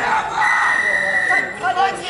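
Referee's whistle at a rugby ruck: one steady blast of about a second, over players' and spectators' voices.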